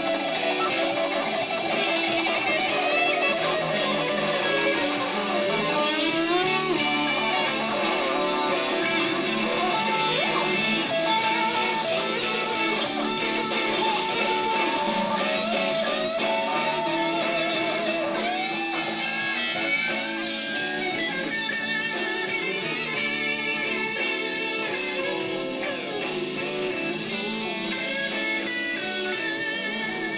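Blues-rock electric guitar soloing over a backing band, with bent and wavering lead notes, played back from a concert video through a television's speakers.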